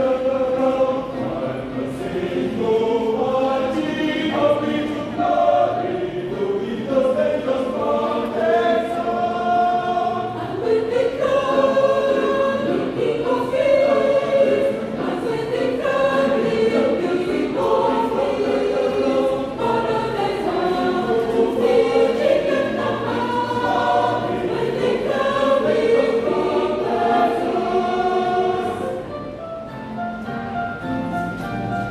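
Mixed choir of women's and men's voices singing a gospel song in harmony.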